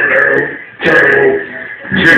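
Live electronic jam on a Korg Kaossilator Pro and Kaoss Pad: a processed, voice-like sound over a steady high held tone. It cuts out briefly about a third of the way in and comes back.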